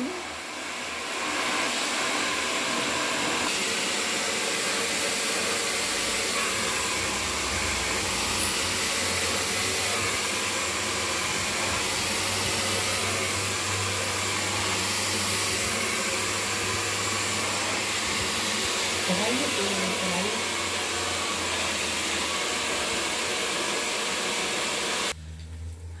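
Handheld hair dryer running steadily as long hair is blow-dried, switching off abruptly about a second before the end.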